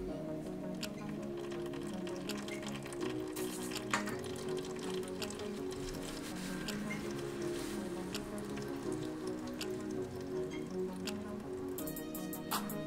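Background music with steady sustained notes, with scattered faint clicks and pattering over it.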